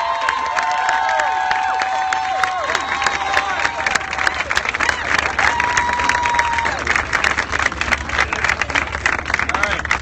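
Crowd clapping and cheering: long whooping calls ring out over the applause in the first few seconds, then the clapping grows denser and continues.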